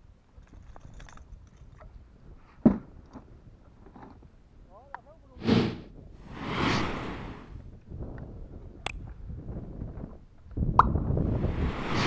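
Fishing gear handled on a plastic kayak: a sharp knock a few seconds in and another click later. Between them come two bursts of splashing water about halfway through.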